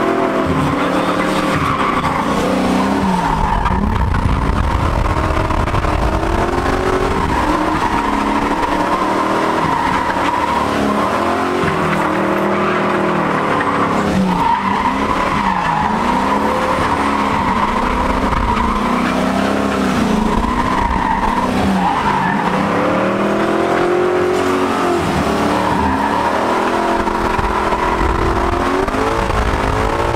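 Drift car heard from inside the cabin mid-drift: the engine revs up and drops back every few seconds over a continuous tire squeal.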